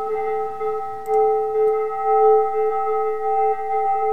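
Granular synthesis output from a Max 7 granulator patch, firing four grains of a sound file on each metro tick: a sustained drone on one pitch with several steady overtones, its loudness swelling and ebbing.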